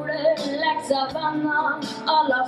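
A child singing a song into a stage microphone, with instrumental band accompaniment underneath.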